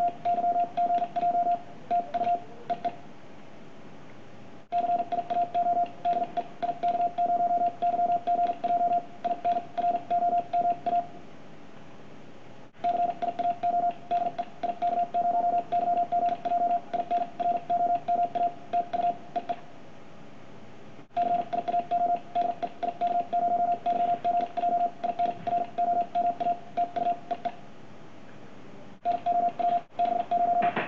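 Morse code sidetone, a single tone of about 700 Hz keyed rapidly on and off by a Begali Sculpture single-lever paddle at high speed, 40 to 60 words per minute. It comes in four sending runs separated by short pauses, and the speed rises from run to run.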